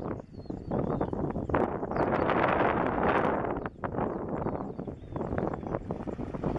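Wind buffeting the microphone in uneven gusts, loudest around the middle.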